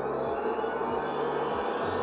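Electric heat gun running, a steady fan whir with a rush of blown air.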